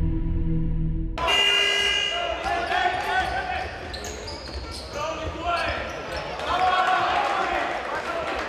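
A low, steady intro music drone that cuts off suddenly about a second in. It gives way to basketball game sound in an indoor arena: voices from the crowd and court, with the ball bouncing.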